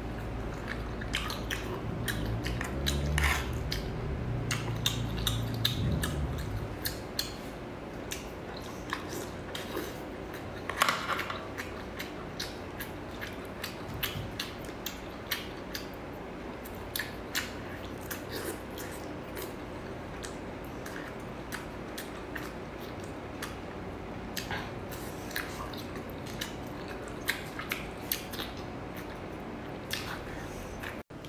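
Close-miked eating of sauce-coated clam meat: wet chewing and slurping with many short, sharp clicks and smacks, the loudest about three and eleven seconds in. A low humming sound runs under it for the first six seconds.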